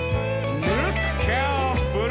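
Live western swing band playing, with sliding melody notes over a steady bass.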